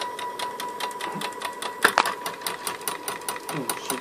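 A stepper motor salvaged from a printer, 200 steps per revolution and driven by an A4988 chopper driver, turning a drilling machine's leadscrew. It gives a steady high whine with fast, even ticking, and a sharper click about two seconds in.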